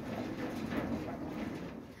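Low creaking and knocking from an old car body and frame bouncing on its suspension as someone steps on it.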